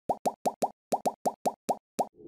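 A quick run of about ten short pop sound effects for an animated logo: four in fast succession, a brief gap, then more at a similar pace.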